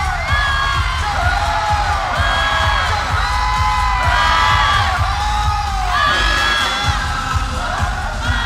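Loud live pop concert music with heavy, thumping bass, heard from within the audience, with the crowd cheering, screaming and singing along over it.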